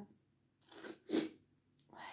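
A woman sneezing: a quick breath in, then the sneeze just over a second in.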